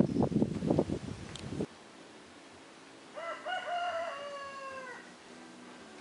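A rooster crowing once, one drawn-out call of nearly two seconds that falls slightly at the end.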